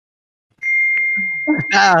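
Silence, then a single high, steady ding tone that holds for about a second and fades slightly, followed near the end by a man laughing.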